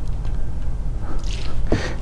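Steady low hum in the room, with a short soft hiss about a second and a half in.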